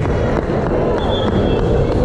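Reverberant gym sound of a volleyball rally: a steady bed of crowd noise with sharp hits of the ball, and a brief high squeak about a second in.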